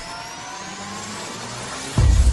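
Cinematic logo-intro sound effect: a riser of slowly climbing tones over a rushing noise, building up after the bass drops away and ending in a sudden heavy bass hit.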